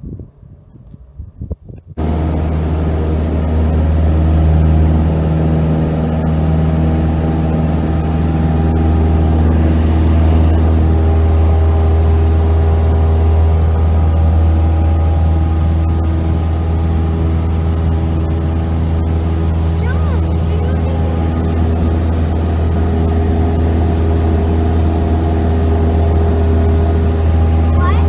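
Cessna 172K Skyhawk's four-cylinder engine and propeller at takeoff power, heard from inside the cabin: a loud, steady, low drone that starts abruptly about two seconds in and holds without change.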